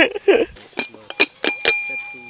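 Glass clinking: several light strikes in quick succession in the second half, each with a short ring, the last one ringing on.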